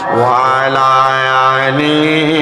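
A man's solo voice chanting Arabic salawat on the Prophet in a slow, melismatic style, holding long wavering notes.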